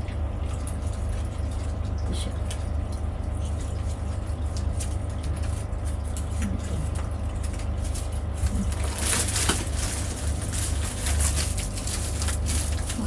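Clear plastic packaging being handled and pulled open, with scattered small rustles and clicks and a loud burst of crinkling about nine seconds in, over a steady low hum in the room.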